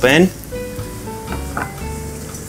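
Chopped purple potato and shallot sizzling in hot oil in a small stainless steel saucepan, a steady frying hiss under background music.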